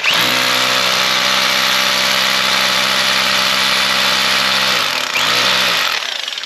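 DeWalt rotary hammer drill running under load, boring into a concrete floor. Its pitch dips and recovers about five seconds in, and it stops at the end.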